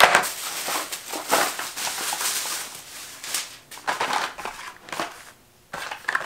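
Thin plastic shopping bag rustling and crinkling in irregular bursts as it is handled and carded die-cast cars are pulled out of it, dropping off briefly near the end.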